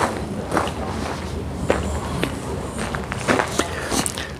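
Footsteps on gravel: a walker's irregular steps, roughly one every half second to second.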